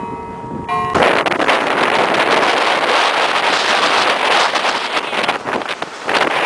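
Loud, even wind noise buffeting the microphone on the deck of a boat moving through broken sea ice, mixed with the rush of churned water. It starts abruptly about a second in, after a few steady ringing tones.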